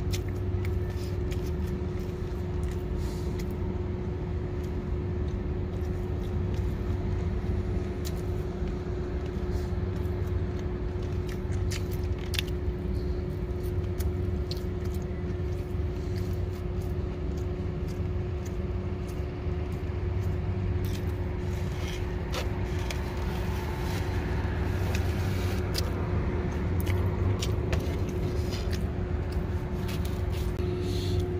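A truck idling, heard from inside the cab: a steady low hum with a constant tone over it. Small clicks and taps are scattered through.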